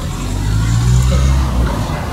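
An engine running with a low steady hum that swells about half a second in and fades near the end.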